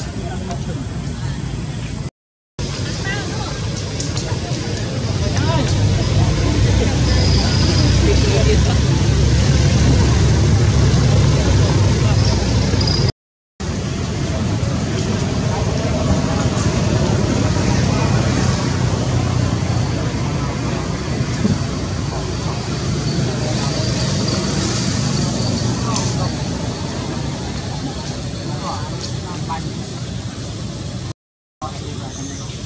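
Steady outdoor background noise, a low rumble with a hiss over it, loudest in the middle. It drops out to silence twice, briefly, about two seconds in and about thirteen seconds in.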